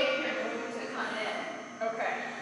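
Speech: a person talking, the words not made out.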